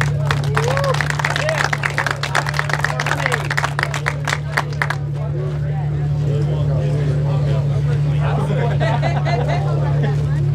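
A small crowd applauding, with a few voices calling out, for about five seconds, then dying down into chatter. A steady low hum runs underneath.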